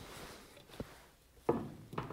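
Light handling sounds of a telescoping gauge being set into a bench-mounted micrometer: a few soft metal clicks and taps, the sharpest about a second and a half in.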